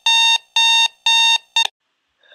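Digital bedside alarm clock beeping its wake-up alarm: a steady, shrill electronic tone pulsing about twice a second, with the last beep cut off short near the end.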